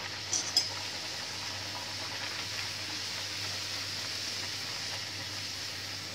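Puris deep-frying in hot ghee in a kadai: a steady sizzle, with a couple of brief clicks about half a second in.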